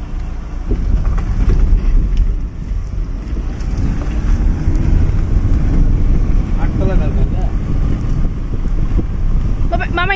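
Wind buffeting the microphone: a loud, steady low rumble, with faint voices in the background.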